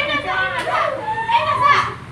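Speech only: lively talking in high-pitched voices.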